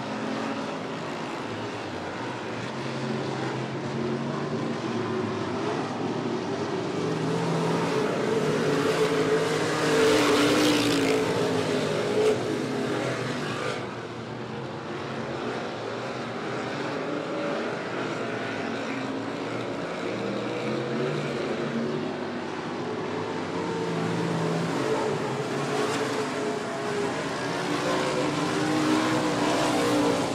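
A field of street stock race cars running hard on a dirt oval, their engines under load. The sound swells loud as the pack passes about ten seconds in, with one brief sharp crack just after, fades, then builds again near the end as the cars come around.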